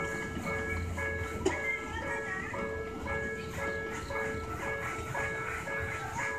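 A simple electronic jingle: clear, chime-like single notes in a short repeating tune, with one sharp click about a second and a half in.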